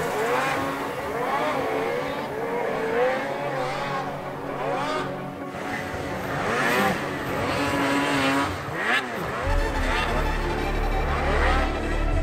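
Racing snowmobiles' two-stroke engines revving up and down, one after another, over background music. A deep bass beat in the music comes in strongly near the end.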